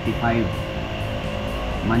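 A man's voice briefly at the start and again near the end, over a steady background hum.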